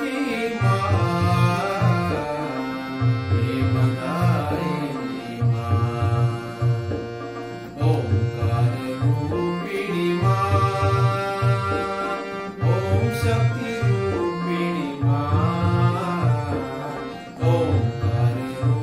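A hand-pumped harmonium playing a devotional melody, with a man singing the bhajan over it in stretches, above a steady low drum rhythm in the style of tabla.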